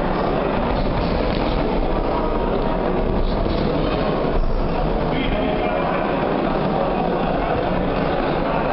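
Crowd of spectators at a boxing bout talking and calling out at once, a steady din with no single voice standing out.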